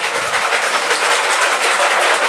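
Kitchen blender running steadily, a loud even whirring noise as watermelon drink is blended.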